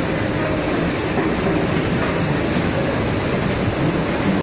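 Automatic popsicle feeder conveyor and flow-pack wrapping machine running: a steady, dense mechanical clatter.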